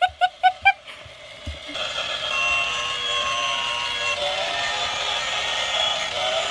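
A short run of laughter in the first second. Then, from about two seconds in, a battery-powered toy train set plays a thin electronic tune of held notes that changes pitch now and then.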